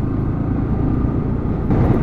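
Yamaha R15 V3's single-cylinder engine running steadily at low road speed, together with road and wind noise, with a little more hiss near the end.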